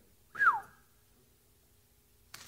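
A single short whistle about half a second in, gliding down in pitch, then quiet room tone.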